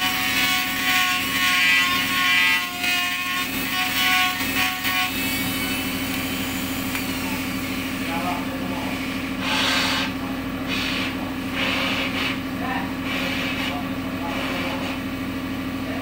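Flexible-shaft rotary tool grinding inside the horn mouthpiece of a Yemenite shofar to carve its bowl: a whine with a steady motor hum underneath. The grinding whine stops about five seconds in, and later a series of short hissing scrapes comes over the continuing hum.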